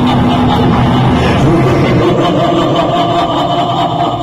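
Dramatic recorded music from a pandal's light-and-sound show, playing loud over a sound system, with long held notes.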